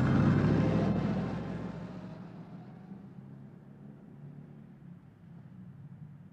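A taxi cab's engine pulling away, loud at first and fading out over the first two or three seconds, leaving a faint low hum.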